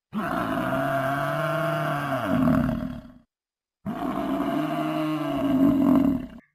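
A deep animal roar heard twice, each call about three seconds long and pitched low and steady with a bend at the end. The second call is nearly a copy of the first, as if the same roar were replayed.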